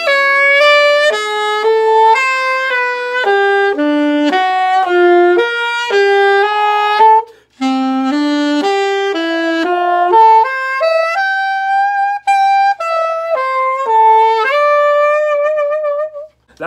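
Saxophone playing a jazz lick slowly, note by note, in two phrases with a short break about halfway through; the second phrase ends on a long held note.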